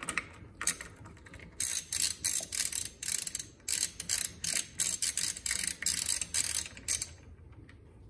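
Socket ratchet wrench clicking in quick runs of sharp ticks as it is worked back and forth to loosen the nut on the gear shaft of an Align AL-200S power feed. The clicking stops about a second before the end.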